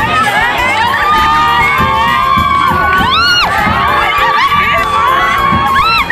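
Several women ululating together (the Bengali ulu) in long, high, wavering calls that overlap one another, over a loud crowd.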